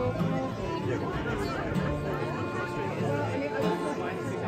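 Fiddle and acoustic guitar playing a folk tune, with crowd chatter mixed in.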